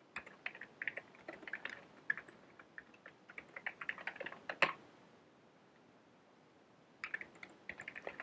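Computer keyboard typing in quick runs of keystrokes, with one sharper keystroke before a pause of about two seconds; typing resumes near the end.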